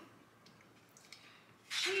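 Quiet room tone with a couple of faint small clicks, then near the end a woman's voice starts calling out 'cheese'.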